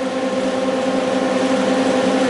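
Electric radiator cooling fan running steadily at part speed under a PWM fan controller: a constant rush of air with a steady multi-tone hum under it.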